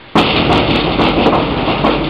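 A sudden loud rumbling noise with irregular clattering knocks in it, starting abruptly a moment in and going on steadily.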